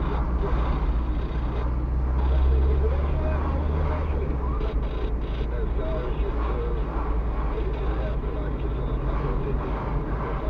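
Low, steady engine and tyre rumble of a car driving at low speed, heard inside the cabin through a dashcam. The rumble swells briefly about two seconds in, then settles.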